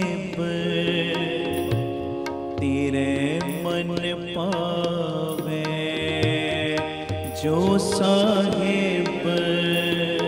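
Devotional Sikh kirtan: a man sings slow, drawn-out melodic phrases over the steady drone of harmoniums, with tabla keeping time.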